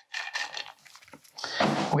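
Fingers spreading dry, baked oat crumble across a plate: a few short rustling scrapes, then faint small knocks.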